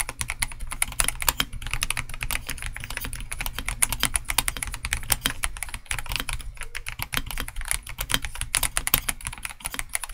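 Fast, continuous typing on a stock ProtoArc x RoyalAxe L75 mechanical keyboard with Gateron G-Pro Yellow linear switches and thick PBT keycaps: a dense, unbroken run of keystrokes.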